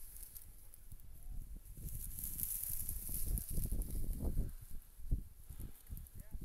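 Irregular footfalls and rustling through tall dry grass, with wind buffeting the microphone. The thumps grow stronger after about three seconds.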